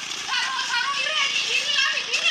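Several people laughing and talking over one another, with high-pitched voices.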